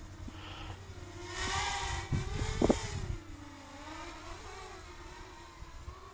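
Walkera Runner 250 racing quadcopter's brushless motors whining, the pitch wavering up and down with the throttle as it flies back at speed, loudest for a second or two near the middle. A few low knocks come about two and a half seconds in.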